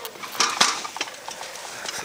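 Scattered metallic clinks and rattles of zipline harness hardware, the carabiners and clips knocking together, with rustling handling noise; the loudest cluster comes about half a second in.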